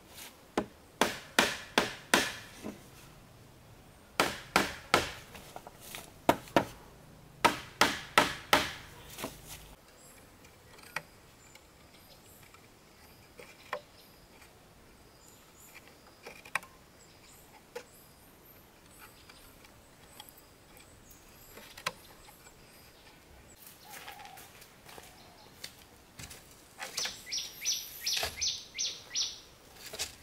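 Hollow bamboo ladder poles being struck repeatedly as rungs are knocked into place. Each sharp knock rings with the tube's own pitch, in bursts through about the first ten seconds. Then come only scattered light taps and clicks, and near the end a bird calls in a rapid run of high notes.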